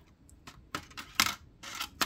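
A freshly annealed brass wire coil held in metal tweezers clinking against a metal pan as it is quenched in water: a series of light, irregular clicks, the loudest about a second in.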